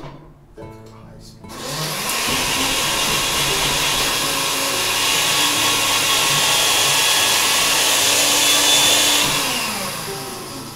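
A small electric motor runs loudly and steadily for about eight seconds, starting about a second and a half in and dying away near the end.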